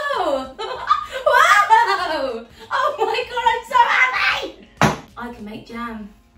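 A woman's voice in excited, wordless exclamations, her pitch sweeping up and down, with one sharp knock about five seconds in.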